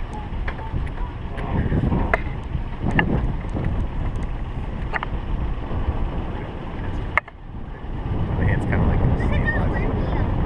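4x4 driving slowly over a rough dirt track: steady low engine and road rumble with wind on the microphone, and several sharp knocks as it jolts over bumps. The sound drops abruptly just after seven seconds in, then builds back.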